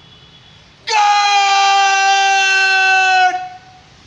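A drill commander's drawn-out shouted word of command, one loud held note starting about a second in and sustained for about two and a half seconds, dipping slightly in pitch just before it breaks off.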